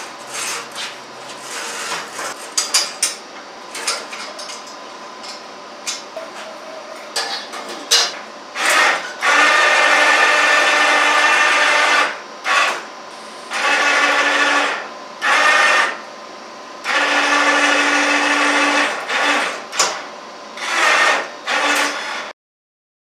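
Electric ATV winch motor running in several bursts of a few seconds each, the first and longest about nine seconds in, winding its cable to lift a steel spiked dethatcher off the floor. Before that, metal clanks and clicks as the dethatcher frame is handled and hooked up.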